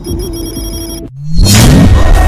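Edited Bengali film-song track. A held low tone with a high, ringing, ringtone-like pattern above it cuts off about a second in. After a brief gap, a rising sweep leads into the full song, which comes in loud.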